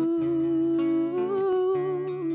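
A woman singing one long held note over acoustic guitar, part of a slow worship song.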